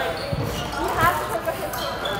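Fencers' feet thudding on the floor during footwork and lunges, a couple of dull thuds, over background voices and chatter in a busy fencing hall.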